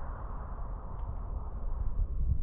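A car driving along the road away from the listener: steady tyre and engine noise that thins a little toward the end, over a low rumble.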